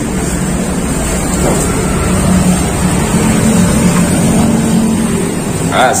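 Street traffic noise: a loud, steady rumble of passing vehicles.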